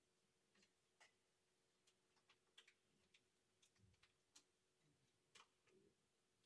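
Near silence: faint room tone with a few scattered, irregular soft clicks and taps.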